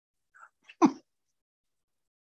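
A man sneezing once into his hand, a short sharp burst just before a second in, after a faint intake of breath.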